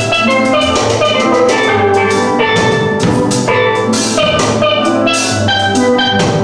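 A steel pan (steel drum) ensemble plays a tune: many struck, ringing pan notes over a low bass-pan line, with drums keeping a steady beat.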